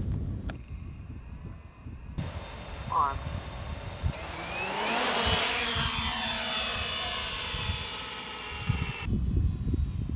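Multirotor drone's electric motors and propellers buzzing as it flies close past, growing louder to a peak about halfway through, then falling in pitch as it moves away.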